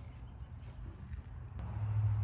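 A low steady hum with a faint background hiss that swells near the end, and a single faint click about one and a half seconds in.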